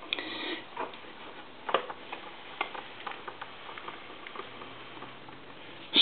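Light, scattered clicks and knocks from the wooden cabinet door of an old Monarch wall crank telephone being handled and swung around on its hinges, the sharpest knock a little under two seconds in.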